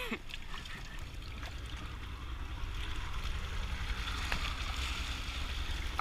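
Water churning and trickling steadily around a pedal boat as its paddle wheel turns, over a low rumble.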